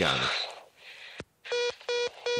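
Telephone line tone in a recorded phone call: a click, then short buzzy beeps repeating about two and a half times a second, starting about one and a half seconds in.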